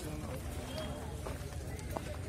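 Faint, distant voices talking over a steady low rumble of outdoor background noise.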